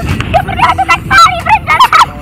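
A girl's high-pitched voice in a quick run of short, wordless squeals.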